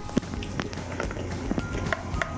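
Fresh okra pods clicking and rustling as they are handled in a bowl, with a few scattered light knocks.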